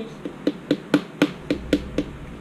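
Metal spoon clicking against a small glass baby-food jar, a quick even run of sharp taps about four a second.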